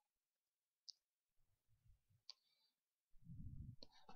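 Near silence with a few faint computer-mouse clicks: one about a second in, a sharper one just past two seconds, and a quick cluster near the end. Soft low thumps come in between and again near the end.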